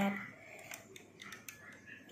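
Faint scattered clicks and ticks of a loom hook working rubber bands over the plastic pegs of a bracelet loom.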